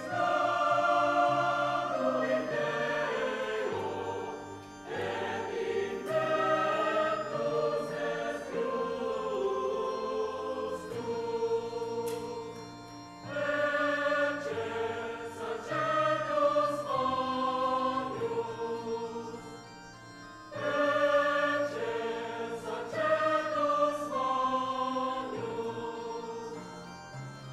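Church choir singing a hymn during Mass, in long phrases with brief breaks between them.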